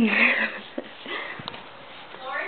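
A person's short, breathy vocal sound without words, rising then falling in pitch over about half a second, followed by faint rustling and a short click.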